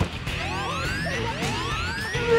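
Comic sound effects in a TV promo edit: a series of overlapping rising whistle-like sweeps, a new one starting about every half second, with faint music underneath.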